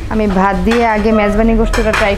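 A woman talking, with light clinks of tableware and a brief clink near the end.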